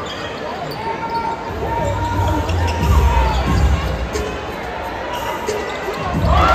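Basketball bouncing on a hardwood arena court during live play, with arena crowd noise and voices around it. The heaviest low thuds come in the middle.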